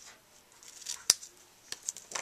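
Scissors snipping the end off a black ribbon bow: two sharp snips about a second in, a little over half a second apart.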